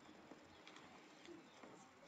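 Near silence: faint room tone in a pause of the narration.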